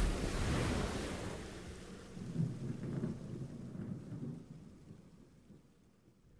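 A thunderclap at the start, rolling into a low rumble that swells again about two seconds in, over the hiss of rain, then fading away.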